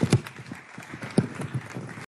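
A small audience applauding, the separate hand claps distinct and irregular, with a few louder single claps near the start and about a second in.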